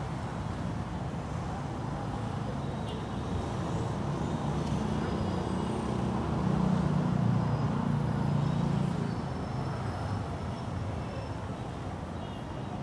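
City street traffic noise, with a vehicle engine growing louder and passing close by around the middle before fading.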